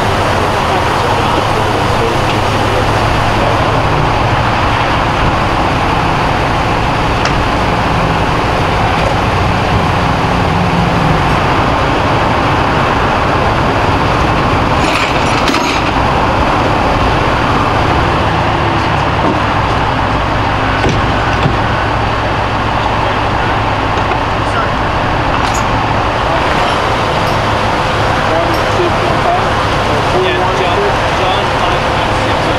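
Fire engine's diesel engine running steadily, a loud constant drone with a low hum, with indistinct voices over it.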